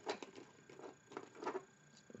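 Faint handling noises: a few soft ticks and rustles from hands moving over wool knitting on a needle.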